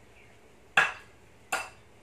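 Two sharp, short eating sounds from someone eating papaya salad by hand, about three quarters of a second apart.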